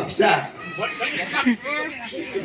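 A man's voice through a handheld microphone, in short calls that glide up and down in pitch, higher than ordinary talk.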